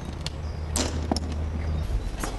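Footsteps scuffing and knocking on gritty, crumbling concrete stairs, a few steps with the sharpest a little under a second in, over a steady low rumble.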